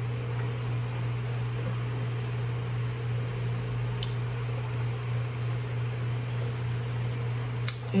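Steady low hum of room tone, with a faint click about four seconds in.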